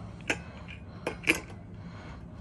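Three short sharp clicks as the wire rear guard of a Hurricane 16-inch oscillating fan is fitted against its plastic motor housing. The last two come close together just past the middle, and the last is the loudest.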